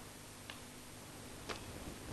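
Faint ticks about a second apart, two in all, over a steady hiss of room noise.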